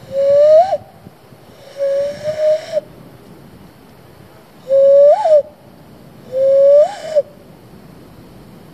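Cupped-hand whistle: air blown across the thumbs into cupped hands, giving four hollow, owl-like hoots, each under a second long, with a pause between pairs. Each note rises slightly in pitch, and most end in a quick upward flick.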